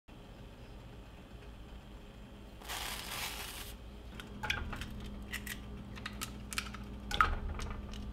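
Dry rolled oats poured into a saucepan of hot milk: a rustling pour lasting about a second, followed by scattered light clicks and ticks.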